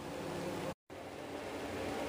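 Steady low background hiss of room tone with no distinct sound in it, broken a little under a second in by a split second of dead silence at an edit cut.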